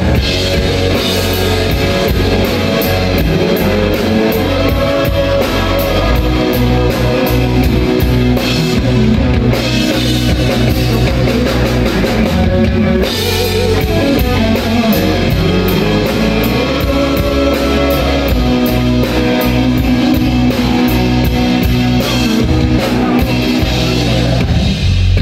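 Live rock band playing: electric guitar, bass guitar and drum kit, with steady cymbal strokes throughout.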